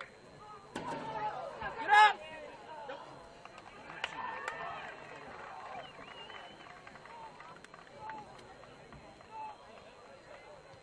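Scattered shouts and calls from soccer players and sideline onlookers during play, with one loud, short shout about two seconds in.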